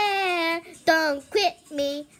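A girl singing along: one long held note with a slight waver, then three short notes.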